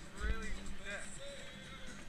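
Indistinct voices of people talking nearby, with a short rising-and-falling vocal sound in the first second, over music in the background.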